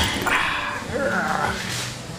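A man laughing over the noisy background of a busy cafe.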